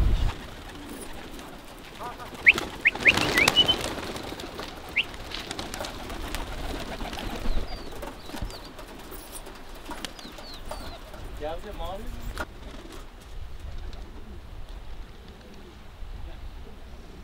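Pigeons cooing, with a few short high bird chirps about three seconds in.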